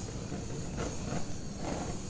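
Handheld butane torch flame running with a steady hiss and low rumble as it is passed over wet acrylic paint.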